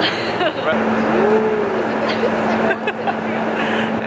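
People's voices and laughter over steady wind and motor noise on an open tour boat. A steady low hum sets in under a second in.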